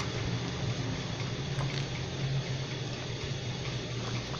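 Pages of a hardcover comic-book omnibus being flipped, a soft paper rustle with a few faint page ticks, over a steady low hum and hiss.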